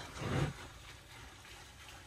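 A brief, faint voiced hesitation from a man near the start, then low, steady room tone with no other distinct sound.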